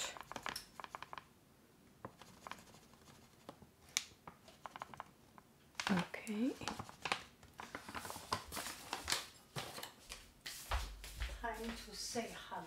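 Crinkling packaging with light clicks, snips and crackles as a bag of flour is opened and handled, busiest a few seconds before the end, with a low bump near the end.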